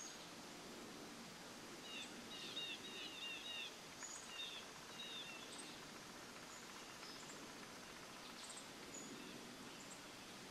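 A songbird calling: a quick run of repeated chirps from about two to five and a half seconds in, with scattered short high chips, over faint steady outdoor background noise.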